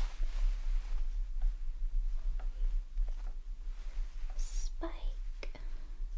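Soft whispering near the end, over faint rustling and a few light clicks from hands moving close to the microphone, with a steady low hum underneath.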